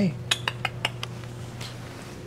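A quick run of sharp metallic clinks, about five in under a second, then a softer one.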